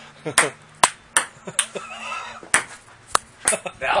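Table tennis ball clicking off paddles and the table in a casual rally: a string of sharp clicks about half a second apart, with a short break in the middle.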